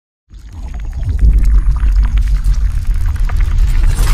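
Deep, loud rumbling sound effect of an animated logo intro, starting suddenly a fraction of a second in, with scattered crackles above it.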